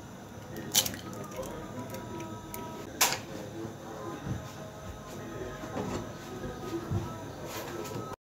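A hen's egg broken open by hand over a nonstick frying pan, the shell coming apart and the egg dropping into the pan with a soft squish. Two sharp clicks, the louder about three seconds in.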